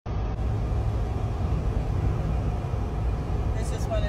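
Steady low rumble of road and engine noise inside the cabin of a car driving at highway speed.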